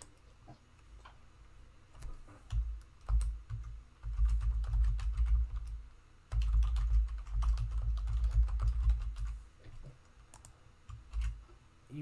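Typing on a computer keyboard: a few scattered keystrokes at first, then two long runs of fast typing in the middle, tailing off near the end.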